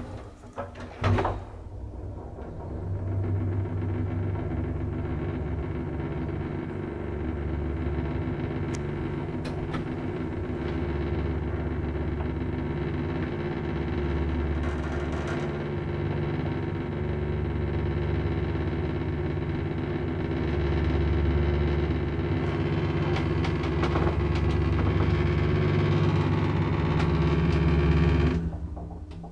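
Modernized Schindler elevator car travelling after its doors shut with a knock about a second in: a steady hum with several held tones over a low rumble that swells and fades every few seconds. Near the end the doors begin to slide open.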